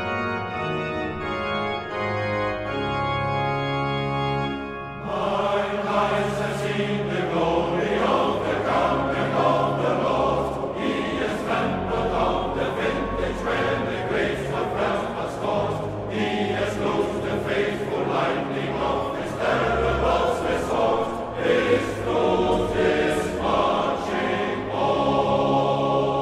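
Organ playing sustained chords; about five seconds in, a choir comes in singing with the organ, and the music fills out.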